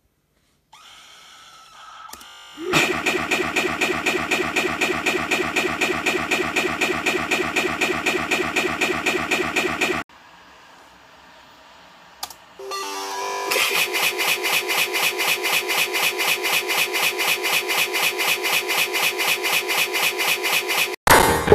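Harsh electronic sound with many tones at once, pulsing evenly at about five pulses a second. It cuts off abruptly about ten seconds in and starts again in the same pattern about three seconds later.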